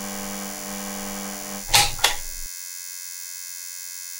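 A sustained electronic drone of several steady tones, with two short whooshes about two seconds in. After the whooshes the lower tones cut out and the higher ones hold on.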